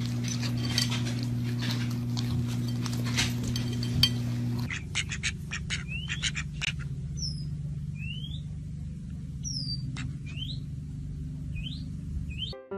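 A steady low hum with light clicks and one sharp click about four seconds in. Then the sound changes suddenly to a quieter hum under short, thin bird chirps, most of them rising in pitch, about one a second.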